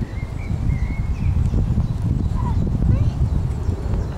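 Wind buffeting the camcorder microphone, an uneven low rumble, with a few faint high peeps over it in the first second.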